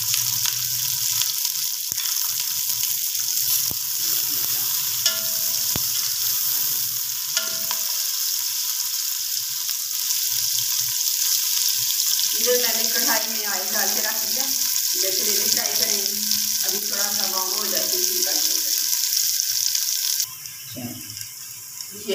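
Sliced onions and garlic sizzling steadily in hot oil in a pot. The sizzle cuts off abruptly near the end.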